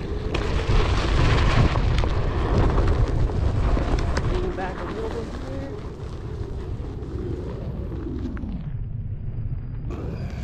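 Low rumble of a onewheel with a SuperFlux hub motor climbing a steep dirt hill under heavy load, its knobby tyre rolling over gravel and dry grass, with wind buffeting on a microphone close to the board. The rumble is a little louder for the first few seconds and then eases.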